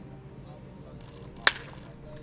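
A baseball bat strikes a pitched ball about one and a half seconds in: a single sharp crack with a short ring after it.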